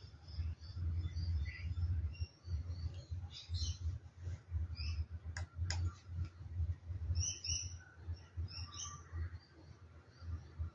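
Birds chirping, short scattered calls that are loudest about three-quarters of the way through, over an uneven low rumble. Two sharp clicks come about halfway through.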